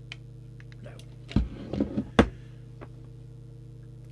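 Steady low electrical hum, with two sharp clicks about a second and a half in and just after two seconds, and a short spoken word between them.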